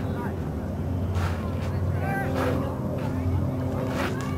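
A lacrosse game's voices: a short shouted call about two seconds in, over a steady low rumble, with a few sharp knocks about a second in and shortly after the middle.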